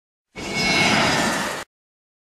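A short whooshing transition sound effect, a little over a second long, swelling to a peak and then cutting off abruptly.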